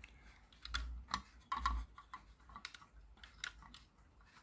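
Irregular small plastic clicks and taps from fingers handling the plastic gears and housing of a toy car's friction (flywheel) motor, with a few dull low bumps.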